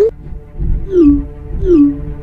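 Background music with sliding, wavering tones: a falling glide about a second in and another near the end, over a low bass.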